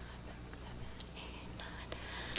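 Quiet meeting-room ambience: a low steady hum under faint whispering and murmuring, with a sharp click about a second in.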